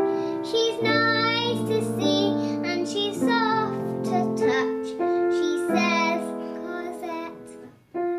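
A child singing a song with piano accompaniment; the music fades away just before the end.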